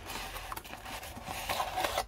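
Cardboard rustling and scraping as a folding carton is opened and a brown cardboard inner box is slid out of it, a little louder near the end.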